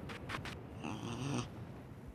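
Two quick clicks, then a short pitched, animal-like vocal sound lasting about half a second.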